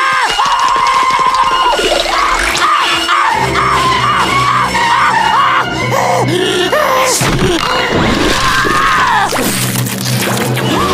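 Cartoon soundtrack music with a cartoon character screaming and yelling over it in long, wavering cries.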